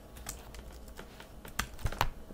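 Keys being pressed on a computer keyboard: a scattering of separate, irregular clicks, the sharpest few near the end.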